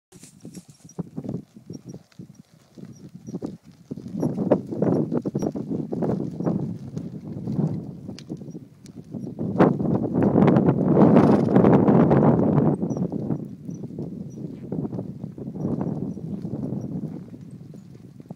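A ridden horse's hooves beating on a sand arena at a trot, growing loudest around the middle as the horse passes close, then easing off.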